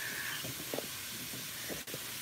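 Steady hiss, with a brief soft laugh right at the start and a single click near the end.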